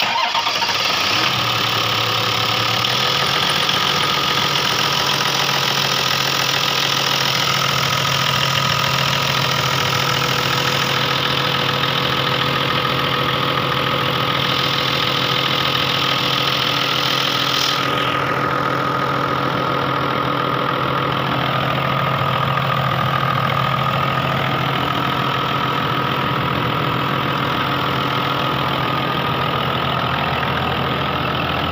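Toyota Land Cruiser diesel engine catching right at the start and settling into a steady idle within a few seconds. A high hiss over it eases a little over halfway through, leaving the idle running on.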